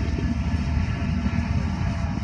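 Freight train of tank cars and box cars rolling past at a crossing: a steady low rumble of wheels on rail.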